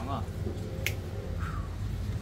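A single sharp snap a little under a second in, over a steady low hum.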